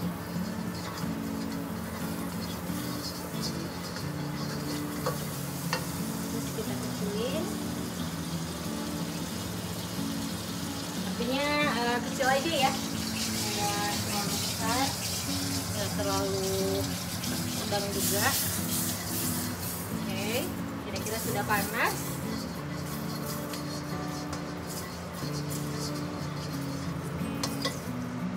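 Margarine sizzling in a hot nonstick wok over a gas flame, under the steady noise of a running kitchen range hood. Background music plays throughout, and a voice is heard briefly around the middle.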